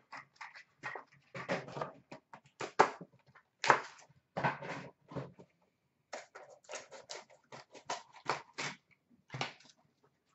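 Irregular crinkling and tearing of plastic and cardboard packaging in short, uneven bursts as a card box is unwrapped and opened.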